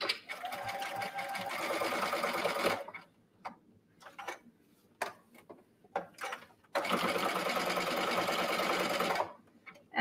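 Brother computerized sewing machine running a zigzag stitch through sweatshirt fleece in two steady runs, the first about three seconds long and the second starting near seven seconds in, with a few short clicks and taps in the pause between.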